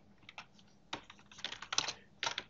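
Typing on a computer keyboard: a few separate keystrokes, then a quick run of several near the end.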